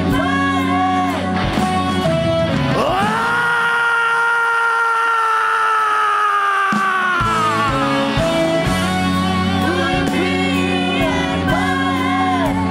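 Live rock band, with wavering electric guitar lines at the start. The band then drops out while the lead singer holds one long, high, raspy shouted note for about four seconds, sliding down at the end, and the full band comes back in.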